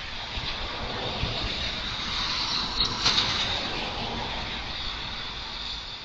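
A car driving slowly through standing floodwater, its tyres swishing through the water. The noise swells to its loudest about halfway through, then eases off.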